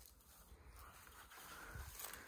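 Near silence, with only a faint low rumble.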